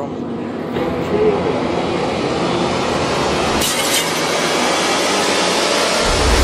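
A loud, steady wash of noise from the cartoon's soundtrack, swelling over the first second, with a brief crackle about two-thirds of the way in: the mysterious sound a character has just asked about.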